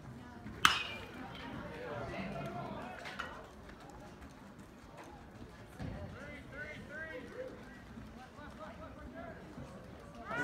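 A baseball bat hitting a pitched ball: one sharp crack about half a second in, the loudest sound. Spectators shout and cheer through the rest of the play.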